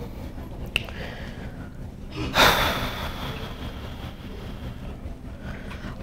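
A person's sharp exhale close to the microphone about two seconds in, over a steady low room hum, with a faint click just before it.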